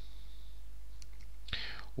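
A pause in a man's speech, with a steady low hum and a faint click about a second in. Near the end comes a short breath, just before he speaks again.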